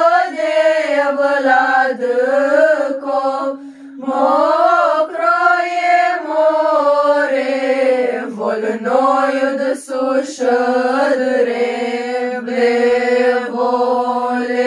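A group of young women singing a Christmas carol (colind) a cappella in unison, in long held phrases, with a short pause for breath about four seconds in.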